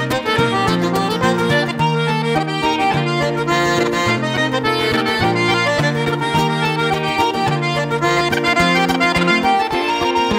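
A set of Irish reels played on button accordion, a quick unbroken run of notes, with guitar accompaniment underneath.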